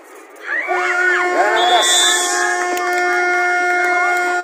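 Game buzzer sounding one long steady tone from just under a second in, marking the end of the quarter, over shouts from players and onlookers.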